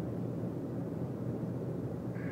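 Steady low road and engine noise inside a moving car's cabin, with a constant low drone.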